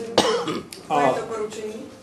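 A single short cough just after the start, followed by a man speaking a word.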